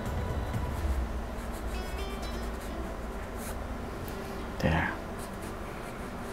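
Faint scratchy swishes of a nylon flat brush working dark acrylic paint onto canvas, over soft background music and a steady low hum.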